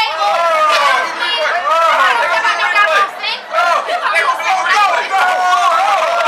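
Several voices talking and shouting over one another in excited chatter, with no clear words.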